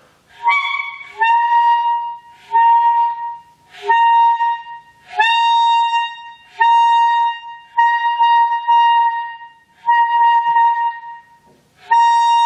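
Alto saxophone playing a string of about nine short high notes, each about a second long with brief gaps, mostly on the same pitch and often scooping up into it at the start. This is a high-register practice exercise: the player reaches the high note by changing the angle of the horn and mouthpiece in his mouth.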